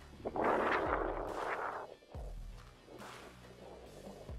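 Background music with a soft low beat. A louder rushing noise swells in just after the start and lasts about a second and a half.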